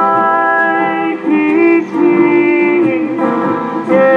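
Live Hawaiian band playing a slow ballad with ukulele, guitar and upright bass. Long held melody notes slide from one pitch to the next, changing about every second.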